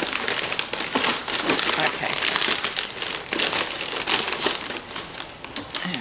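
Orange plastic shipping bag crinkling and rustling steadily as hands rummage inside it, with many small sharp crackles.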